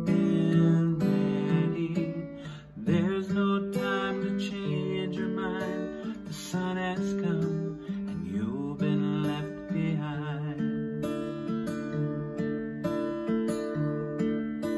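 Acoustic-electric guitar strummed and picked in a slow song, with a man's voice singing along softly at times in the first ten seconds; guitar alone after that.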